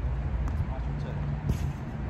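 A couple of sharp knocks of a tennis ball in play, a faint one about half a second in and a louder one about one and a half seconds in, over a steady low background rumble.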